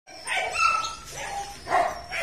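Belgian Malinois barking, with a thin high whine held for about half a second between the barks.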